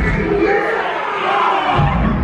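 Dancehall music playing loud through a DJ sound system, with a crowd shouting over it.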